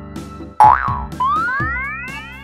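Cartoon sound effects over upbeat children's background music: a springy boing about half a second in, then a rising whistle-like glide climbing to the end, marking parts fitting onto an animated helicopter.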